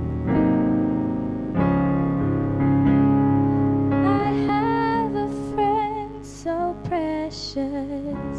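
Electric keyboard playing slow sustained chords, changing about every one and a half seconds, as the intro of a children's song. About four seconds in, a girl's voice starts singing over it through a microphone.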